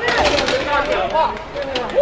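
Several people shouting and cheering in celebration of a goal, with a loud "Woo!" about a second in.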